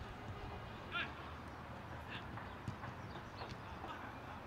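A football being kicked on a grass pitch, a few short sharp thuds, the clearest about two-thirds of the way in. Players give brief calls and shouts among the kicks, over steady outdoor ambience.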